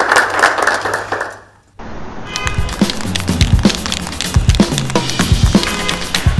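Studio audience applause that fades out over the first second and a half, then after a brief silence, background music with a drum beat and bass line.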